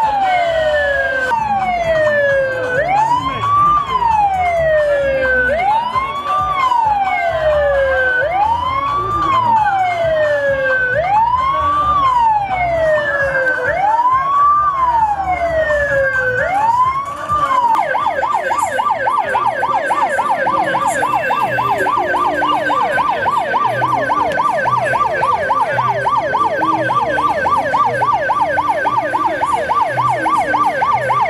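Electronic vehicle siren on a hearse van, sounding a slow wail that rises and falls about every two and a half seconds, then switching a little over halfway through to a fast yelp.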